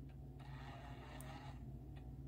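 Faint, steady low electrical hum over quiet room tone, with a faint soft hiss lasting about a second shortly after the start.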